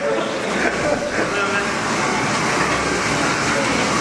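Water splashing and churning as people thrash about in a swimming pool, with voices talking over it.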